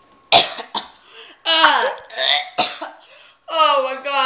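A young woman coughing and gagging on a mouthful of dry ground cinnamon: sharp, harsh coughs, one about a third of a second in and another about two and a half seconds in, between strained vocal groans, one of which slides down in pitch.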